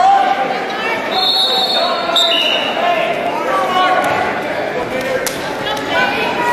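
Spectators' voices and chatter echoing in a large gym, with a few thuds and a sharp knock about five seconds in.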